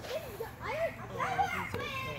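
Children's voices talking and exclaiming, high-pitched and excited.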